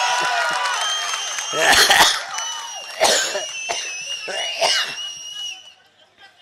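Large rally crowd cheering, with long, high, steady whistling tones running over the noise and a few short, loud bursts close to the microphone at about two, three and four and a half seconds in, before it dies away near the end.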